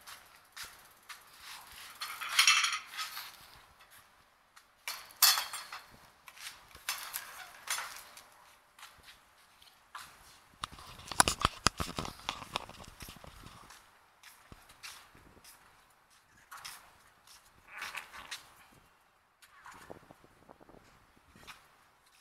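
A child's small bicycle rattling and scraping over a tiled floor in irregular bursts of clicks and scuffs, the busiest run of clicks a little past the middle.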